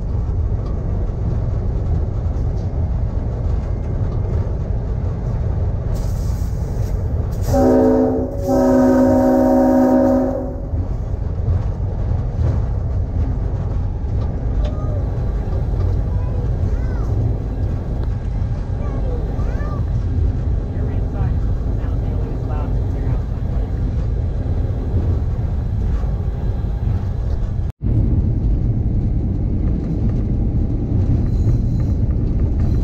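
B&O #6405 diesel locomotive running along the track with a steady low engine rumble. About eight seconds in, its horn sounds twice: a short blast, then a longer one of about two seconds.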